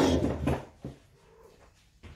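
Domestic cat meowing close by in the first half-second, with a short second sound just after, as it asks to be let out; then only faint room noise.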